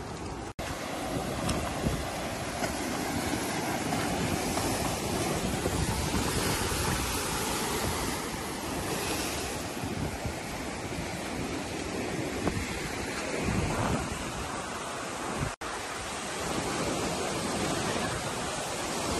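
Surf breaking on a rocky shore with wind buffeting the microphone, a steady rushing noise. It cuts out suddenly and briefly twice, about half a second in and near the end, where clips are joined.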